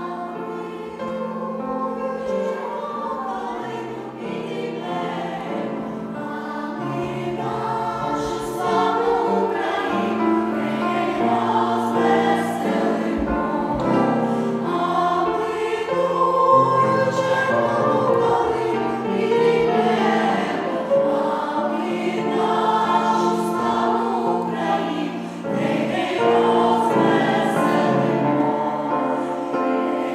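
A choir of women and children singing, growing louder over the first half.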